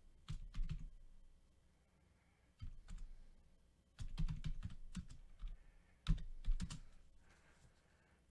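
Computer keyboard being typed on in four short bursts of keystrokes, with pauses between them.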